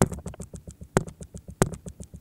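Computer mouse scroll wheel ticking in quick, irregular runs of about ten clicks a second, with a few louder clicks about one second and one and a half seconds in, as pages of a drawing app scroll past.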